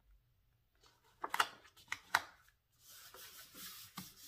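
Paper handling as a sheet of scrapbook paper is laid on a taped flap and pressed down by hand. There are two brief sharp paper sounds about one and two seconds in, then a soft swishing rub as palms smooth the paper flat.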